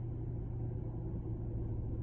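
Steady low hum and rumble of a car heard from inside its cabin.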